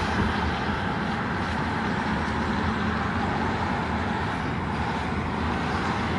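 Steady road noise of a car being driven on wet pavement, heard from inside the car: an even tyre-and-engine rumble with hiss above it.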